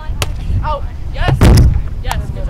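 A volleyball hit with a sharp slap at the net, followed by short calls from the players. Wind rumbles steadily on the microphone throughout, and the loudest sound is a strong blast of wind buffeting the microphone about a second and a half in.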